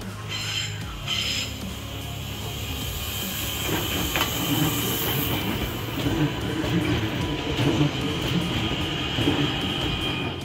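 Abellio electric multiple unit pulling out of the station and passing close by, its wheels clattering over the rail joints with a steady high whine. Two short high-pitched tones sound about half a second and a second in, and the rolling noise grows louder from about four seconds.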